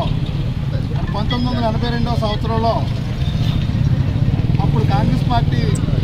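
A motor vehicle engine running steadily close by, a low continuous rumble, with people's voices talking over it in the background.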